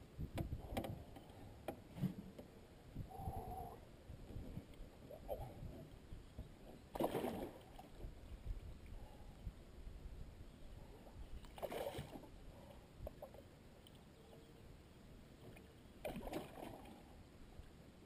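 Water splashing and sloshing around a landing net at the side of a fishing boat, with three short, louder splashes about five seconds apart, typical of a netted fish thrashing at the surface. There are light knocks and rumble in the first two seconds.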